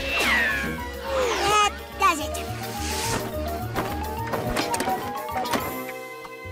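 Cartoon soundtrack: background music, with a character's squeaky, sliding vocal sounds in the first couple of seconds, then a run of notes climbing step by step.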